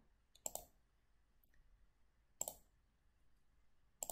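Two computer mouse clicks about two seconds apart, against near silence.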